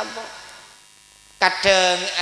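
A man speaking into a handheld microphone breaks off for about a second, leaving only a faint steady electrical hum, then starts speaking again.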